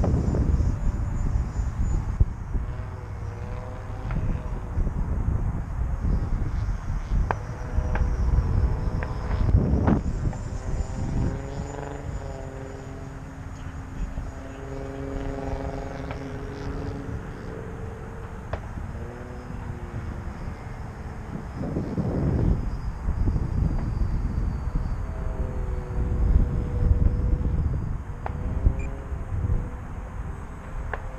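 Electric ducted-fan model jet in flight: a whine that rises and falls in pitch as the throttle changes and the jet passes, louder on passes about ten seconds in and again a little past twenty seconds. Wind buffets the microphone with a low rumble throughout.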